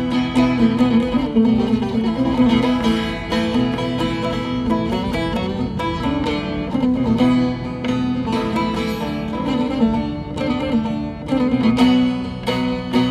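Turkish bağlama (saz) played with quick plucked strokes, a melody running over a steady low drone note.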